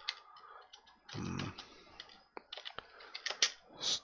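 Computer keyboard keys being typed in irregular clusters of clicks, with a brief voiced murmur about a second in.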